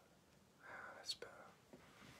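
A man's faint, breathy whisper close to the microphone, lasting under a second, about half a second in; otherwise near silence.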